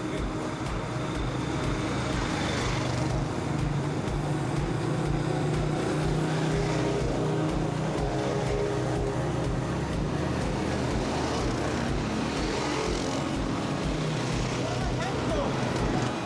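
Several quad bikes/ATVs driving past one after another at low speed, their engines running steadily.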